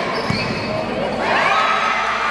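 Live sound of an indoor futsal match: a ball strike about a third of a second in, shoes squeaking on the court, and players and spectators calling out in the hall.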